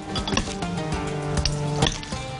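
A metal fork clinks against a glass bowl a few times as shredded cabbage and carrot are tossed together, over steady background music.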